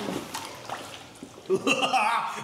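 Wet mudflat mud being moved and spread by hand in a foil-lined mud-bath tub, with soft squelching and sloshing of the warm water beneath the foil. A voice comes in about a second and a half in.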